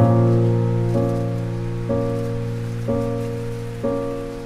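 Background music: slow, sustained chords, a new chord struck about once a second and fading until the next.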